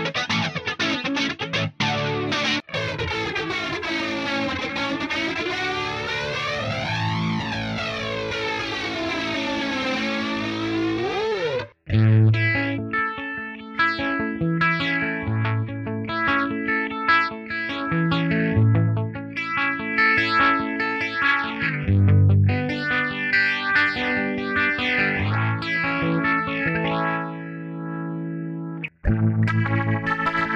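ESP Mirage electric guitar played through a Digidesign Eleven Rack flanger preset, a held note sweeping up and down in a slow flange. After a short break about twelve seconds in come distorted chords through a slow rotary-speaker effect. There is another brief break near the end as the next preset comes in.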